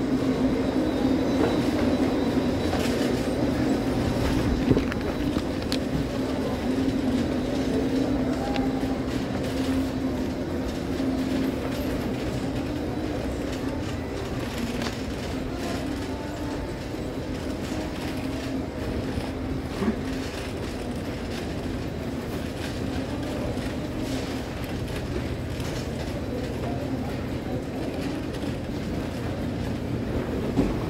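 Shopping cart being pushed across a glossy tiled floor, its wheels rolling and rattling steadily.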